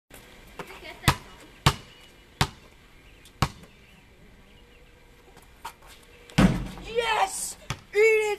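Basketball bounced on a concrete court: four bounces in the first three and a half seconds, further apart each time. About six and a half seconds in comes a loud burst, then a boy's voice calls out.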